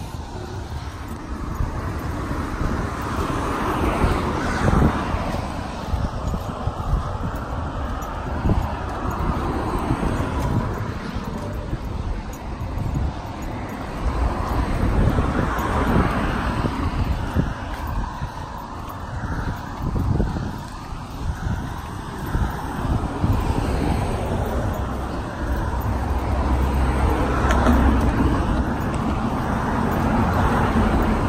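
Road traffic on the bridge roadway, cars passing one after another in swells and fades, with a heavy low rumble.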